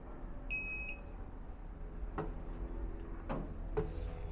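WZRELB 3000W 48V split-phase inverter giving one short, high electronic beep as it is switched on and starts booting. A steady low hum and a few faint clicks lie underneath.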